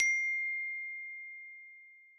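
A single bright, bell-like ding from a logo chime: struck once and left to ring out, fading away over about two seconds while its higher overtones die off first.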